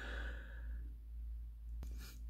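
A person sighing softly in the first second, over a steady low hum, with a faint click near the end.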